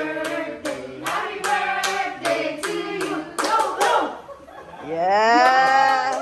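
A group clapping in time, about three claps a second, while singing a birthday song. About five seconds in, the clapping stops and a long drawn-out cheer rises and falls.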